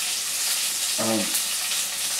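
Steady sizzling of food frying in a pan on a stove turned down to low heat, with a man's brief "um" about a second in.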